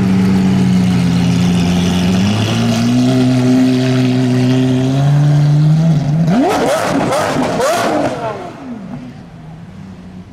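Lamborghini Aventador's V12 engine pulling away at low speed with a steady, loud exhaust note. About six seconds in it is revved sharply several times in quick succession, then the sound fades as the car drives off.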